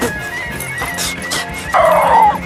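A dog gives a short bark or yip near the end, over background music.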